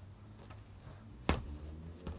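A boxing glove punch landing on a punching bag: one sharp, loud smack about a second and a half in, with a fainter knock earlier.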